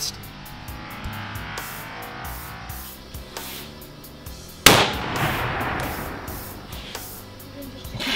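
A single .338 Lapua Magnum shot from a Desert Tech SRS Covert bullpup rifle with a muzzle brake, a sharp report a little past halfway, followed by a fading echo lasting a second or two.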